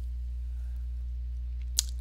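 A steady low hum with one short, sharp click near the end.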